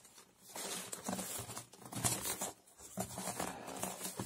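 A cardboard shipping box handled and turned over by hand: irregular rustling and scraping of cardboard in short bursts.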